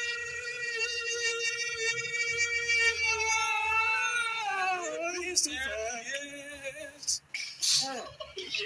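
Male voices singing a school anthem into handheld microphones, holding one long high note that slides down about four to five seconds in, then moving on through shorter notes.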